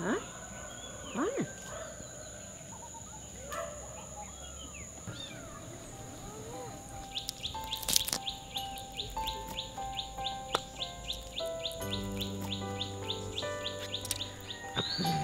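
A bird chirping in a fast, even series of about four chirps a second, with a few short mews from the cats in the first seconds. Soft background music of held notes comes in about halfway through and grows fuller near the end.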